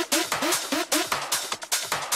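Techno music: a steady beat of hi-hat-like percussion with a short rising synth figure repeating about four times a second.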